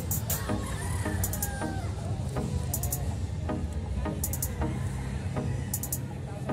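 Roosters crowing and clucking, with one crow about a second in, over hall noise and background music with a regular beat.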